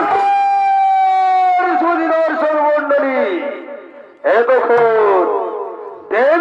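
A man singing loudly in a high voice: one long held note, then falling phrases that fade away, and a new loud phrase starting about four seconds in.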